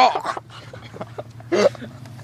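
A person's short, high-pitched vocal reactions while being fed sauce: one right at the start and a shorter one about a second and a half in.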